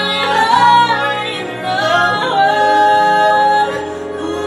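Two women singing a musical-theatre duet together in harmony, with long held notes.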